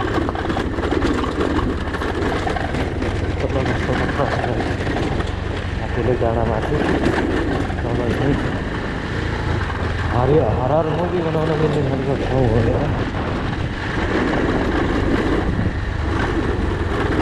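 Motorcycle engine running with a steady low rumble while riding a rough gravel road. A person's voice with a wavering pitch is heard over it about six seconds in, and again for a few seconds from about ten seconds in.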